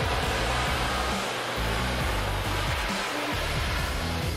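Steady rushing noise of the Airbus A400M's four turboprop engines running with their propellers turning, under background music with a stepping bass line.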